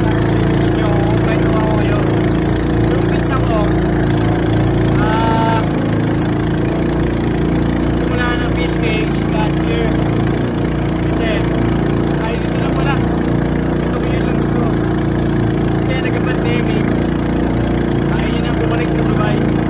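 A small engine running steadily at an unchanging speed, loud and even throughout, with voices heard over it.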